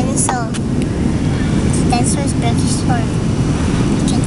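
Hard plastic dinosaur toys clicking and clattering against one another as a hand rummages through them in a plastic storage box. A steady low rumble runs underneath.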